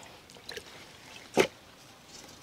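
A raw whole chicken set down into a stainless steel bowl, giving one short, soft thud about one and a half seconds in, with a faint wet handling sound before it.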